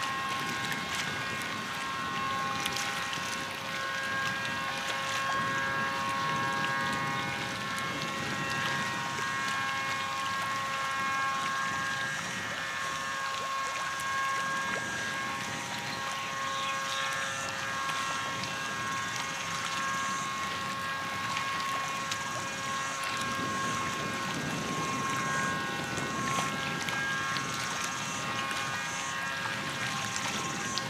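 Wind and choppy water splashing against the low edge of a shoreline, with a steady rush throughout. Over it run several held, steady tones at different pitches that change every few seconds.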